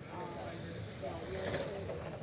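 Radio-controlled race cars running on an indoor track, under indistinct talking, with a short sharp knock about one and a half seconds in.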